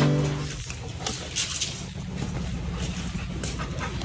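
Pet dogs, a golden retriever and a small long-haired black-and-white dog, moving about with faint scattered clicks over a steady low hum. A song fades out in the first half second.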